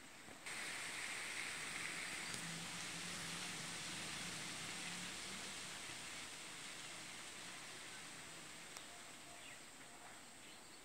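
A faint, steady hiss of background noise that starts suddenly about half a second in and slowly fades, with a weak low hum beneath it.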